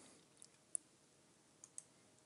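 A few faint, sharp computer mouse clicks in near silence, the clearest about three quarters of a second in and two more close together near the end.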